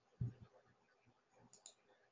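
Faint clicks from a computer mouse: a low thump about a quarter second in, then two quick, sharp clicks about a second and a half in.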